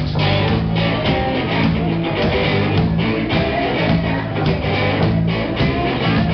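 Live rock band playing: electric guitars with drums, loud and continuous.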